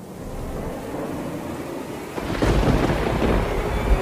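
Thunderstorm sound effect: a rain-like hiss fading in, then a loud rumble of thunder rolling in about two seconds in.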